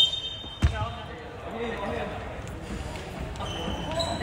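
A basketball bounces once on a wooden gym floor about half a second in, ringing in the large hall. Faint voices follow.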